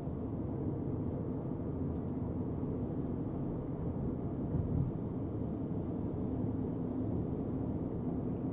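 Steady low road and tyre noise inside the cabin of a Tesla Cybertruck cruising at about 43 mph, with no engine sound and very little wind noise.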